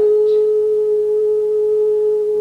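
A voice holding one long, steady note at a single, unwavering pitch.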